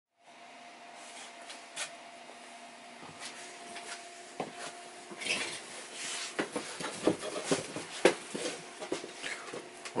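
Scattered small knocks, clicks and rustles of someone moving about and settling in at a workbench, more frequent from about five seconds in, over a faint steady hum.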